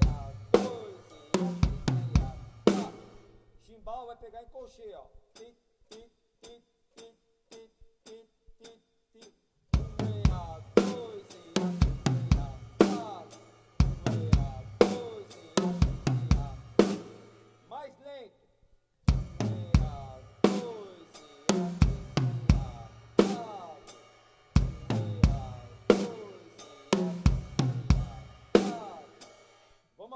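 Acoustic drum kit playing a tom-heavy groove: the left hand moves across the toms over snare and bass drum, and the toms ring with falling pitch. It is played in short phrases, with a pause of about six seconds, from about 4 to 10 seconds in, that holds only faint ticking, and a brief stop near 18 seconds.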